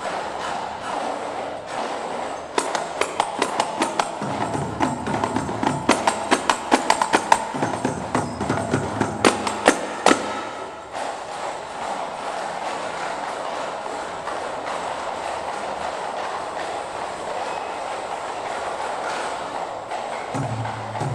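Indang frame drums and hand claps struck together by a row of seated dancers in a quick, sharp rhythm for Tari Indang. The strikes stop about ten seconds in, leaving a steady background sound without strikes.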